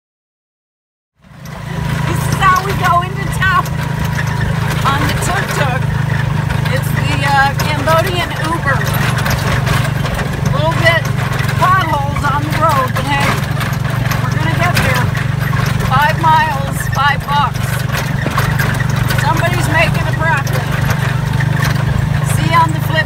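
A woman talking over the steady low drone of a moving tuk-tuk, its motorbike engine and road noise, starting about a second in.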